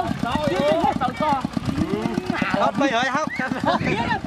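Several people talking and calling out over one another.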